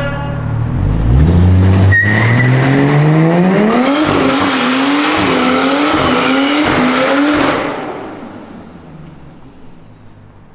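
Car engine revving up hard as a sedan does a skid on the road: the revs climb for about three seconds, then bounce up and down under heavy wheelspin with loud tyre squeal for a few seconds. The sound then fades quickly as the car pulls away.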